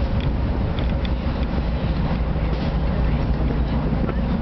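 Steady low rumble of the ship Vesterålen's engines and machinery, with a faint steady hum above it, heard on the open deck. A few faint knocks come through.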